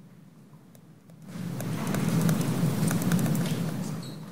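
Rustling, scraping noise close on the microphone, setting in about a second in after a quiet start and running on steadily, as if clothing or a hand is brushing the mic.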